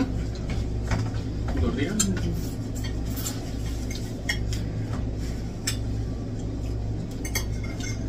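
Forks and cutlery clinking and scraping on dinner plates as people eat, in scattered light clicks a second or so apart, over a steady low hum.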